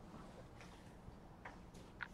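Near silence: room tone with a few faint, short ticks.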